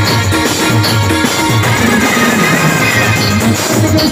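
Live Timli folk dance music: an electronic percussion pad struck with drumsticks and an electronic keyboard, over a steady deep beat about twice a second and a pitched, gliding melody.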